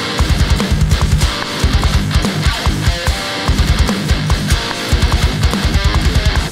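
Heavily distorted electric guitar riff with fast, tight low chugs, its tone from a Neural DSP Nano Cortex amp modeller, played over programmed metal drums with rapid kick drum and cymbals.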